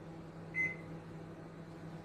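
A built-in microwave oven's keypad gives one short, high beep about half a second in as it is set for a quick reheat, over a low steady hum.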